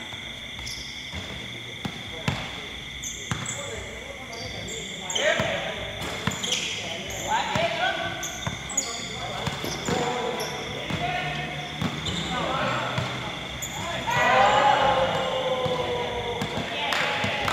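Basketball bouncing on a hard outdoor court during a pickup game, with sneakers squeaking on the surface and players shouting to each other, the shouting loudest near the end.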